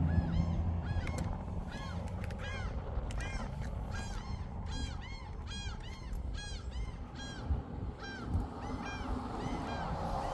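Birds calling: a long run of short, arched, pitched notes, repeated a few times a second and sometimes overlapping, over a low rumble.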